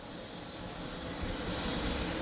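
Rushing noise of a jet aircraft's engines, growing steadily louder.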